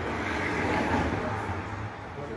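A vehicle passing: a rush of noise with a low rumble that swells to its loudest about a second in, then fades.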